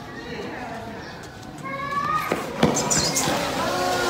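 People's voices, talking and calling out, growing louder from about a second and a half in, with a couple of sharp knocks among them.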